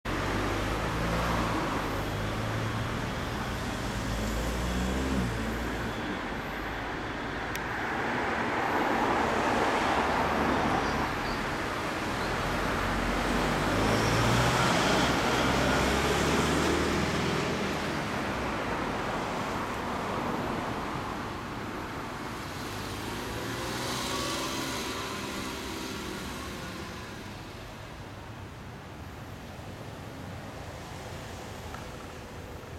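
2015 Honda CB400 Super Four's inline-four engine running at idle through a Moriwaki titanium slip-on exhaust, the sound swelling and fading in level several times. Road traffic can be heard alongside it.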